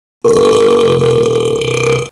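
A long, loud burp from a man, drawn out at one steady pitch for nearly two seconds after a brief moment of silence.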